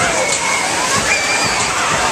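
Steady loud din of a spinning carnival ride running, with crowd voices and riders' shrieks rising and falling over it.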